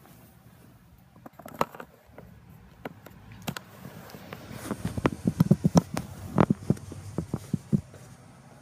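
Handheld phone being carried through a house, its microphone picking up irregular knocks, rubs and soft thuds from handling and movement. The knocks are sparse at first and become denser and louder in the second half.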